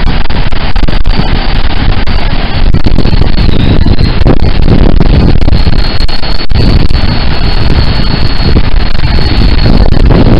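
Strong wind buffeting the microphone, with ocean surf breaking on the beach; a loud, steady rush, heaviest in the low end.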